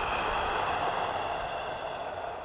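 A person's long, deep breath through the mouth: a strong, steady rush of air that fades slowly over the second half.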